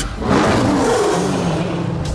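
A lion roaring: a deep, rough roar that bursts in suddenly out of silence, its pitch sliding downward as it goes on.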